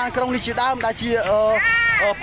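Only speech: a person talking, with two drawn-out syllables that rise and fall sharply in pitch.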